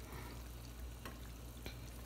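Pot of water at a rolling boil, bubbling and crackling steadily as an apple is rolled around in it with a utensil, with a couple of faint clicks.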